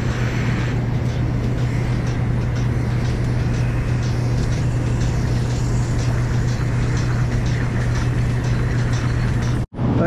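Milking equipment running in a dairy barn: a steady loud low hum from the milking vacuum system, with a hiss over it.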